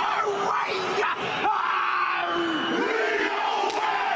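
The All Blacks rugby team chanting and shouting a haka in unison, with one long held call near the middle that drops in pitch as it ends. Stadium crowd noise runs underneath.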